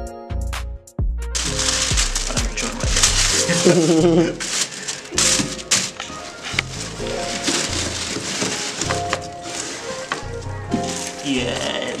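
Cardboard box flaps and white tissue paper rustling and crinkling as a boxed backpack is unwrapped, starting about a second in and going on busily, over background music.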